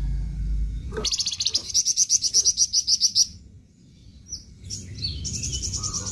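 Caged flamboyan songbird singing its rapid 'besetan' song: a fast trill of repeated high notes lasting about two seconds, a short pause with a single note, then a second trill starting near the end.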